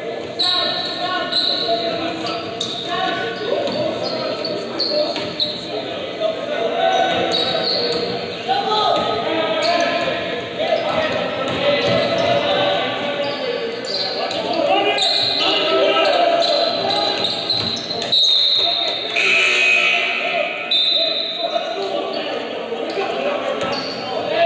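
Basketball game sound in a large gymnasium: a ball being dribbled on the hardwood court amid indistinct crowd chatter, all echoing in the hall.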